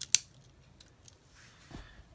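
Diecast toy airplane's retractable landing gear being snapped by hand: one sharp click just after the start, then only faint handling.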